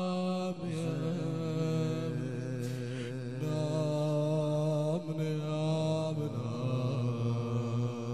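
Male voices chanting a wordless, drawn-out Shia lament (nai): long held, wavering notes that shift pitch a few times.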